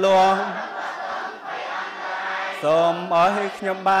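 A Buddhist monk's voice chanting into a microphone in long held notes at a steady pitch. The chant softs into a quieter stretch in the middle before the voice comes back with sliding notes.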